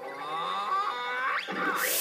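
A drawn-out wordless vocal sound from an animated scarecrow character, with a sharp upward pitch sweep about a second and a half in, over background music. A short hissing whoosh follows near the end.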